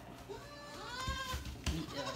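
A baby goat bleating: one long call that rises and then falls in pitch.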